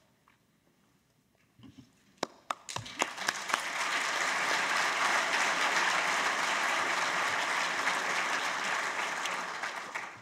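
Audience applause after a talk. A few scattered claps start about two seconds in and build within a couple of seconds into full, steady clapping, which fades near the end.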